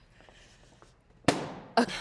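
A red balloon popped with a toothpick: one sharp bang a little past a second in, dying away within about half a second.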